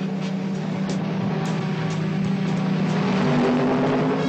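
Cartoon car-engine sound effect running steadily, its pitch stepping up a little about three seconds in, over background music.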